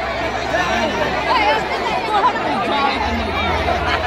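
A large crowd's voices: many people talking and calling at once in a dense, steady babble.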